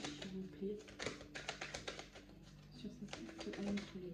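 A deck of oracle cards being shuffled by hand, a dense irregular crackle of card edges slipping against each other. Low, voice-like tones come and go underneath.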